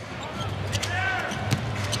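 Basketball being dribbled on a hardwood court, a few sharp bounces, over steady arena crowd noise.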